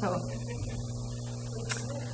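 Steady low electrical mains hum, with a single short click near the end.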